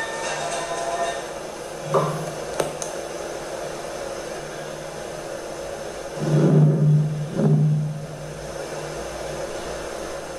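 Steady whirring hum of a small motor running, like a fan. About six and a half and seven and a half seconds in come two short, louder low sounds.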